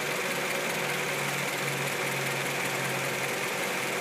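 1991 Honda Accord's 2.2-litre 16-valve four-cylinder engine idling steadily with the hood open. It is being run to check for excess vibration from worn motor mounts.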